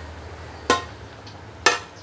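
Stainless steel pot lid clanking twice, about a second apart, as it is lifted off the pot and set down, over a steady low hum.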